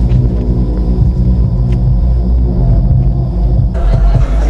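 A loud, deep rumbling drone of trailer sound design with a thin, faint high tone over it; it cuts off abruptly near the end.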